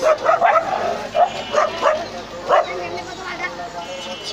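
Short, sharp calls, about seven in quick succession over the first three seconds, over a steady low hum from diesel excavators working the channel.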